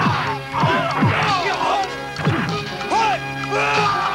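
Background music with a steady held drone under a staged sword fight: a string of sharp hits and several quick falling swishes of swung blows.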